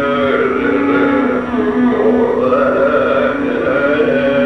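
Carnatic classical music in raga Sri Ranjani: an ornamented melodic line with sliding, oscillating notes over a steady drone.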